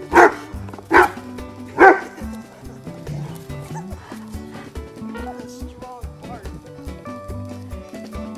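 English bullmastiff puppy barking three times in quick succession in the first two seconds, over background music.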